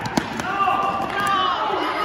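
A basketball bouncing on a gym floor, two sharp bounces right at the start, with voices shouting and echoing through a large gym.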